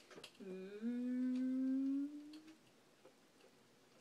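A person humming one long note, about two seconds, slowly rising in pitch, followed by a few faint clicks.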